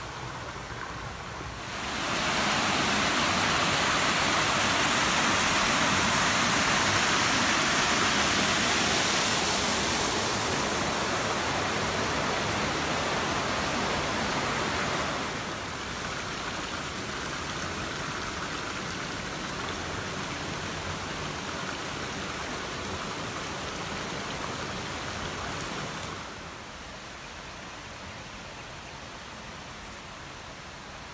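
Water pouring from a stone statue's mouth spout and splashing into a small pool, a steady hiss. It swells about two seconds in, drops a step about halfway through, and drops again near the end.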